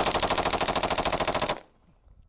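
AR-15 rifle bump-fired with a bump stock: one rapid, evenly spaced burst of shots lasting about a second and a half, then it stops suddenly.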